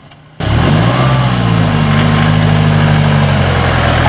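Ford Transit van's engine running close up. It comes in suddenly about half a second in, rises briefly in pitch and then holds a steady note under a loud rushing noise.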